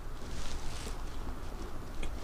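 Chewing a mouthful of crumbly coconut-topped pastry bar close to the microphone, with a few faint crisp crunches.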